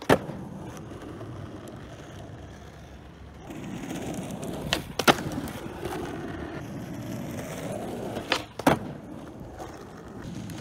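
Skateboard wheels rolling on asphalt, with sharp wooden clacks of the board popping and landing: one loud clack right at the start, a pop and landing about five seconds in, and another pair near the end.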